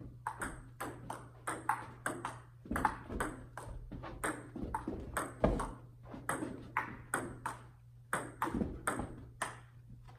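Table-tennis ball in a continuous rally, clicking off the paddles and the table at about three hits a second, over a steady low hum.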